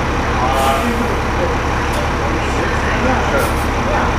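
Orion VII diesel city bus running as it pulls past, a steady low engine rumble with a few short hisses.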